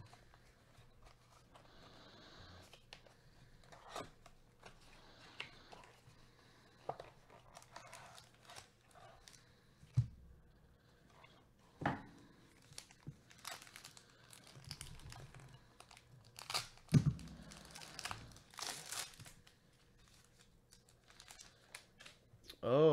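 A trading-card pack wrapper being handled and torn open by gloved hands, crinkling and tearing, loudest in the second half. There are a few sharp knocks along the way as the pack and cards are handled.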